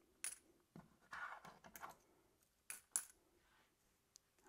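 Coins clinking as they are dropped into a stretched latex balloon: about half a dozen faint, light clicks over three seconds, two of them with a bright metallic ring.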